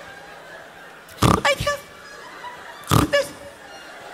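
A man imitating a laugh that goes back in on the breath, with barnyard noises: two short loud bursts, the first about a second in, the second near three seconds.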